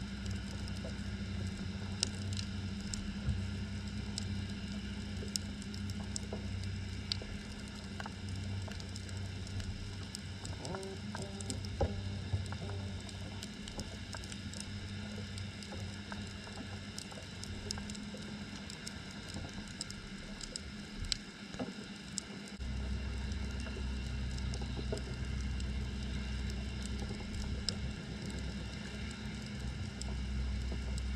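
Underwater ambience heard through an action camera's waterproof housing: a steady low hum with scattered faint clicks and crackles. The hum dips briefly and comes back louder about three-quarters of the way through.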